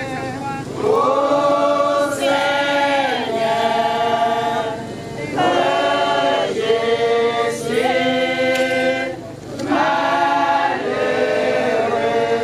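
Church choir of women and men singing a hymn in long held phrases, with brief pauses between the phrases.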